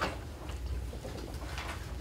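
Room tone of a meeting room: a low steady hum, with a sharp click at the start and a few faint rustles.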